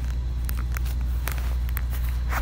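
Handling noise from a phone being picked up and repositioned against the microphone: a steady low rumble with a few light clicks and taps.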